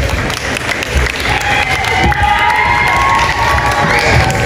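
A crowd of schoolchildren clapping and cheering, with drawn-out high shouts joining in from about a second in.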